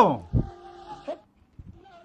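A man's drawn-out, wavering vocal call trailing off at the very start, then only faint low sounds.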